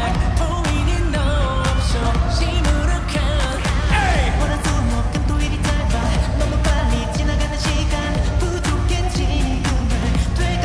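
Male K-pop group vocals over an upbeat pop track with a heavy bass line and a steady drum beat.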